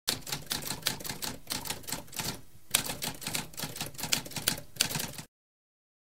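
Manual typewriter typing: a rapid run of clacking keystrokes, with a brief pause about halfway, that stops abruptly about five seconds in.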